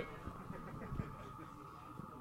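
Quiet room tone with a faint steady high whine and a couple of soft taps near the start.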